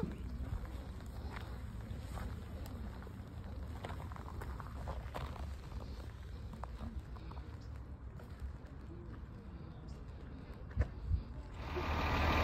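Faint footsteps on loose red gravel and dirt over a steady low rumble, with two louder clicks near the end.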